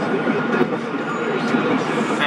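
Steady road and tyre noise of a moving car, heard from inside the cabin.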